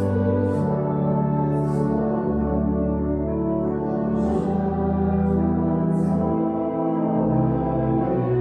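Church organ playing slow, sustained chords, the bass notes moving every second or two.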